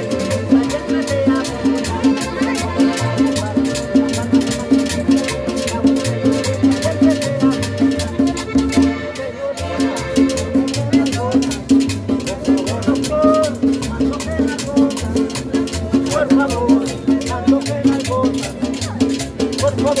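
A live street band playing Latin dance music: a guitar and a bass over a steady, driving percussion beat.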